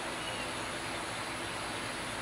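Steady background hiss of outdoor ambience with no distinct event.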